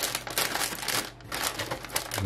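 A large printed paper insert sheet rustling and crinkling as it is handled, in uneven rustles with a short lull just past a second in.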